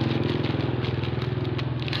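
A small engine running steadily at idle, an even, unchanging hum with a fine rapid rattle.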